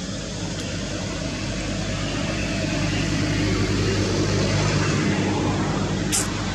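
A motor engine droning steadily, growing louder through the middle and then easing a little, like a vehicle passing at a distance.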